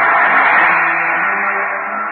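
A loud hiss-like swell in a band-limited 1930s radio broadcast recording, with faint held low notes beneath. It builds over the first half-second and then slowly eases off.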